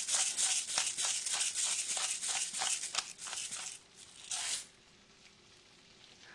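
Hand-twisted pepper mill grinding black peppercorns: a rapid run of dry crackling clicks that stops about four seconds in, with one short burst after.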